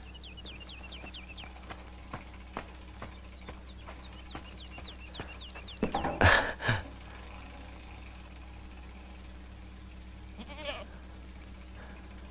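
Goats bleating: one loud bleat about halfway through and a fainter one near the end. Before the first bleat there is a quick run of short, high chirps.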